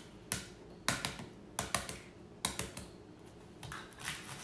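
Hard-boiled egg shell cracking under the fingers, in a few short clusters of sharp crackling clicks.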